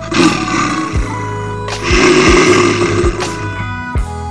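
Two loud, rough elephant roars, each about a second long, the first right at the start and the second about two seconds in, over background music with a steady beat.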